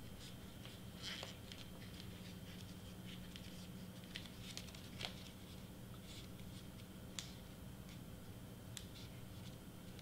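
Faint rustling and small clicks of hands pressing and handling a glued photo-paper candy-bar wrapper, over a low steady hum.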